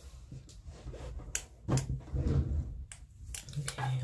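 Tarot cards being handled and laid down on the table: a scatter of light clicks and taps, with a faint murmured voice in the middle.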